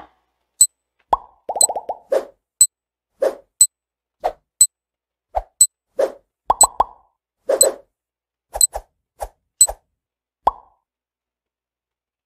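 Quiz countdown timer sound effect: short clicks and pops, some sharp high ticks and some lower pitched pops, roughly once a second, stopping about ten and a half seconds in.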